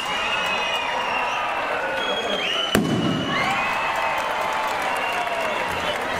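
A crowd cheering and shouting, with a single sharp bang from a firework rocket bursting overhead a little under three seconds in.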